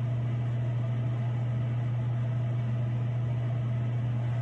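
A steady low hum with a faint hiss behind it, unchanging throughout.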